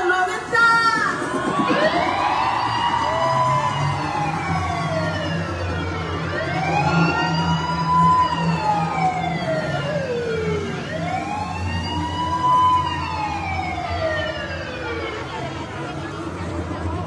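A siren-like wail played through the concert sound system: three slow sweeps, each rising quickly and then sliding down, about four to five seconds apart, over a steady low drone.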